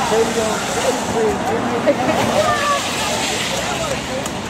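Voices of a group of people chattering while walking, over a steady hiss from rain and traffic on a wet street.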